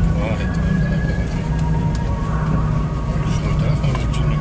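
Car engine and road noise heard from inside the cabin while driving: a steady low drone with no revving, and faint voices over it.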